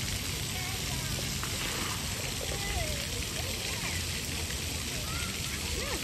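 Distant children's voices over a steady rushing noise.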